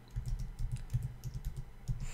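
Computer keyboard typing: a quick, even run of keystrokes, about five or six a second, as a word is typed out.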